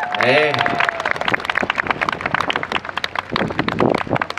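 Audience applauding as a performance ends, with a voice calling out briefly just before the clapping builds.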